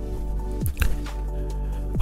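Background music of sustained, steady chords, with a brief sliding sound just under a second in.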